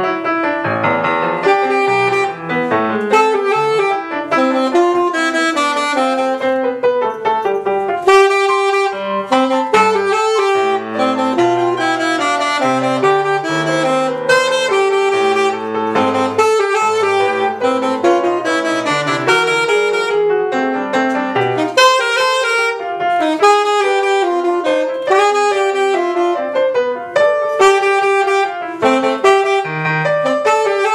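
Alto saxophone and grand piano playing a duet, the saxophone line moving over busy, continuous piano playing.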